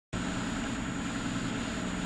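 Steady background hiss with a faint low hum from the recording microphone, cutting in abruptly as the recording begins.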